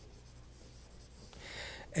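Faint scratchy sound of writing on a classroom board, strongest about a second and a half in, over a low steady room hum.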